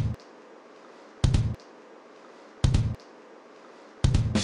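Short, heavy booming hits repeating evenly about every second and a half, a comic sound effect added in the edit, with quiet room tone between them.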